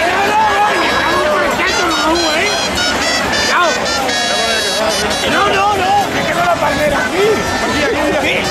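A crowd of many voices singing and calling out together, loud and continuous, with some notes held.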